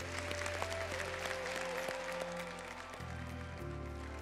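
Audience applause over a background music score with a held note and a low bass line that changes about three seconds in.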